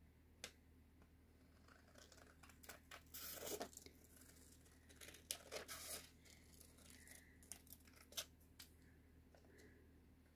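Scissors cutting through thin vellum by hand, with faint, irregular snips and short rasping cuts and the sheet crinkling as it is turned.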